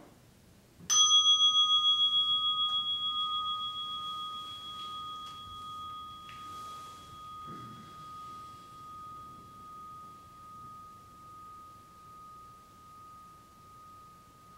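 A meditation bell struck once, ringing on with a clear tone that fades slowly with a steady wavering pulse. It marks the end of a 20-minute sitting.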